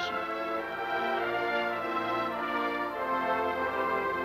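Brass band music playing slow, held chords.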